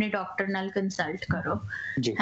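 A woman talking over a video-call link. Near the end a brief, thin whistle-like tone sounds.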